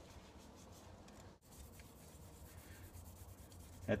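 Faint hand wet-sanding: a primed MDF batarang rubbed over wet 600-grit sandpaper in soft, scratchy strokes.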